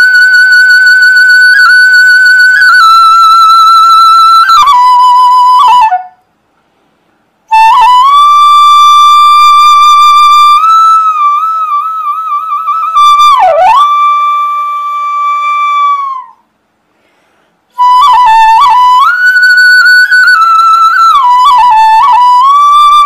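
Solo bamboo bansuri (side-blown flute) playing a slow melody of long held notes in three phrases, with two short pauses about six and sixteen seconds in. The middle phrase has a wavering vibrato and a quick downward bend of pitch.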